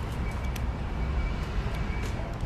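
Wind buffeting a phone's microphone outdoors: a steady low rumble, with a brief click about half a second in.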